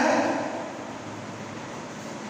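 A man's brief vocal sound at the very start, then steady background hiss.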